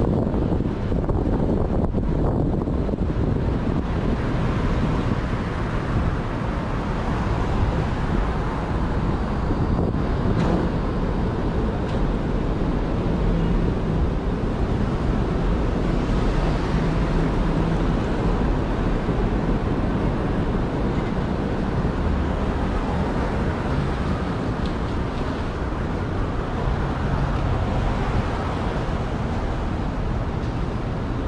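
Steady city street noise: a low traffic rumble, with wind buffeting the microphone.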